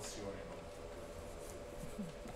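Faint, distant speech: a student answering the lecturer's question from the lecture hall, off the microphone, over low room noise.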